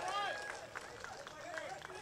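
Faint voices of a few people in an outdoor crowd, talking or calling out in short snatches.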